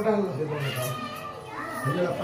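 Voices chanting puja mantras, the pitch held and then rising near the end.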